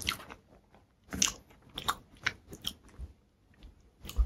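Close-miked chewing of a mouthful of food, a string of short, sharp, crisp mouth sounds with the loudest at the very start and a cluster between about one and three seconds in.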